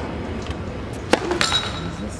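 Tennis ball struck by a racket about halfway through, a sharp pop, followed a quarter second later by a second, smaller impact, over steady outdoor stadium ambience.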